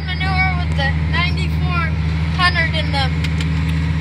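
Large farm tractor's diesel engine running steadily under load, heard from inside the cab, as it tows a manure tanker; a deep, even drone with no change in speed.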